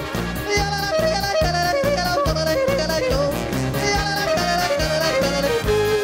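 A man yodeling into a microphone, his voice leaping up and down between notes, over a backing of German folk-style music with a steady beat.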